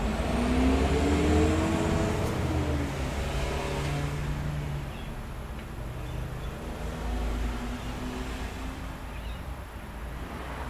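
Motor vehicle engine running, its pitch rising over the first three seconds, then settling to a lower steady drone.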